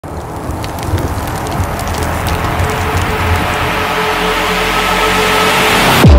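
Cinematic logo-intro sound effect: a noisy riser with scattered crackles, swelling steadily louder and brighter and breaking off suddenly at the end into a deep hit.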